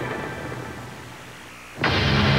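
Soundtrack effects from a pickup-truck TV commercial: a low rumbling boom that fades away, then near the end a sudden loud onset of a steady low drone.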